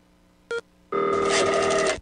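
Telephone ringing: a short tone about half a second in, then a steady trilling ring from about a second in.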